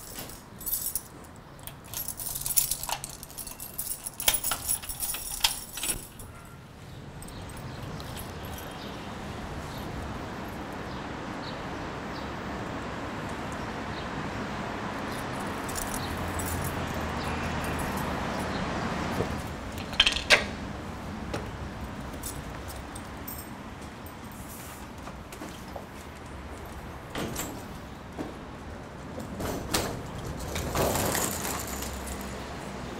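Keys jangling and a lock clicking as a heavy entrance door is unlocked and opened. The steady rush of city traffic then comes in through the open door and swells. About twenty seconds in there are two sharp metallic knocks from the door hardware.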